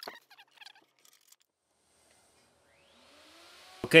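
Faint footsteps and shuffling for the first second or so, then near silence. A faint rising whir fades in shortly before a man's voice starts near the end.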